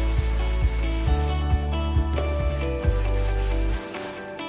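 Background music with held bass notes and a light beat, over a dry rubbing of dough pieces being rounded by hand on a stainless-steel bench.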